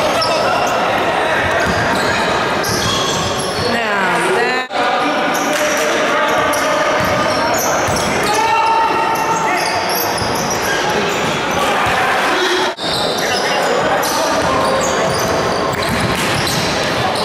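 Basketball game in an echoing sports hall: the ball bouncing on the wooden floor, many short high squeaks of players' shoes, and the voices of players and spectators. The sound briefly cuts out twice, about five and thirteen seconds in.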